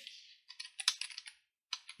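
Typing on a computer keyboard: a quick run of key clicks lasting under a second, then a few more near the end.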